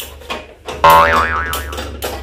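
A cartoon "boing" sound effect: a loud springy tone that wobbles up and down in pitch, starting a little under a second in and fading within about a second.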